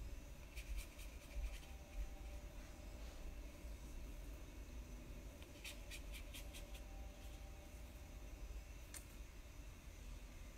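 Faint scratching and light ticking of a paintbrush working watercolor paint on paper: a short run of quick ticks near the start, another in the middle, and one more near the end, over a low steady hum.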